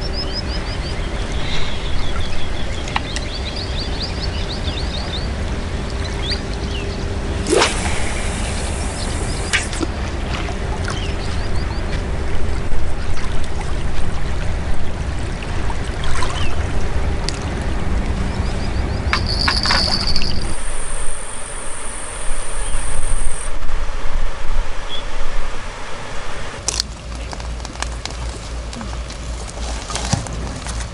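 Shoreline ambience: water lapping under a low rumble, with a faint steady hum and a bird chirping in the first few seconds. A few sharp clicks stand out, and the rumble and hum drop away about two-thirds of the way through.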